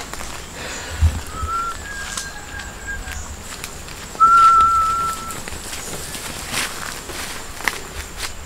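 Single-note whistling: a short, faint whistle about one and a half seconds in, then a louder steady whistle held for about a second just after the middle. A soft thump comes about a second in.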